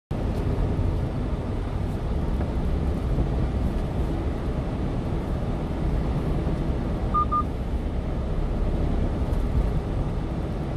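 Steady low rumble of a 1-ton delivery truck's engine and tyres while driving along a road. Two short electronic beeps sound a little after seven seconds in.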